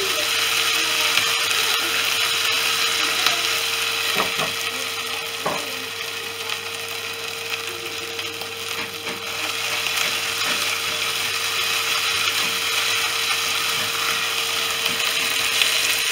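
Food sizzling as it fries in a hot pan, a steady hiss with two brief knocks about four and five and a half seconds in.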